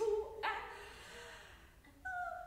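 A sparse, quiet passage of chamber-opera music: a short, sharply attacked note right at the start and another about half a second in, each fading away over the following second.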